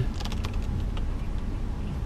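Low, steady rumble of an SUV rolling slowly down a rutted dirt slope, with a few light clicks in the first second from the tyres and suspension working over the ruts.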